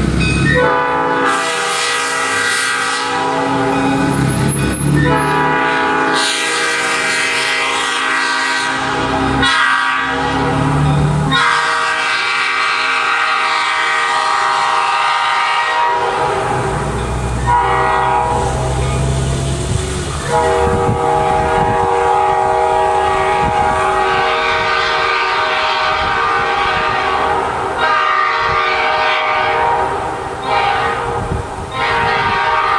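A new-cast Nathan Airchime P5 five-chime locomotive horn sounding its chord in a series of long, loud blasts of several seconds each, with brief breaks between them.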